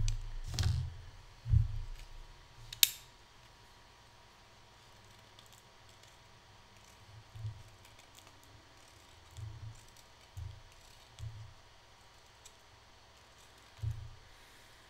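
A wooden pencil being sharpened by hand with a small knife blade: a few handling knocks and a sharp click in the first three seconds, then a handful of short, soft scraping cuts a second or two apart as shavings come off.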